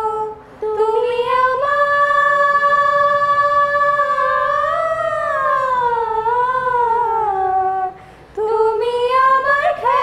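Girls singing a song together to harmonium accompaniment. A long held note slowly bends and falls in pitch through a phrase, with short breaks for breath near the start and about eight seconds in.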